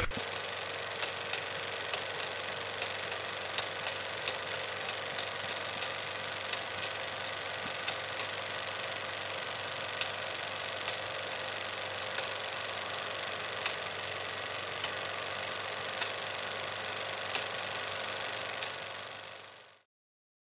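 Steady hiss with scattered crackling clicks, like an old-film or worn-record crackle effect. It fades out just before the end.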